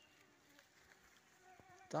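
Faint buzzing of a flying insect, heard briefly twice: once near the start and again about a second and a half in.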